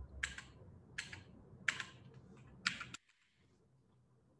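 Computer keyboard keys being pressed: a few separate keystrokes about a second apart while a line of code is edited. The sound cuts out to silence about three seconds in.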